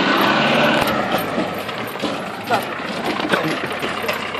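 Land Rover Defender's engine running, louder in the first second and a half and then easing off, with short bursts of voices over it.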